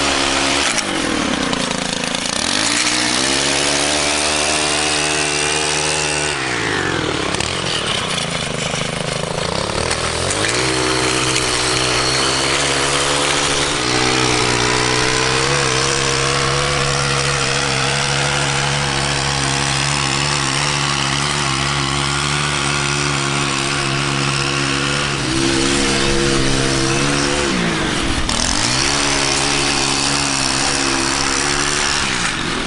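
Small gas engine of a lawn tool running at high throttle. Several times it drops toward idle and revs back up.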